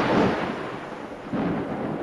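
A rushing, rumbling noise with no tone to it, loud at first and dying down, then swelling again about a second and a half in.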